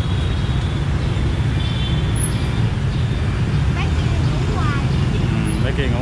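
Busy street traffic: a steady rumble of many motorbike engines running and passing close by, with scraps of voices over it.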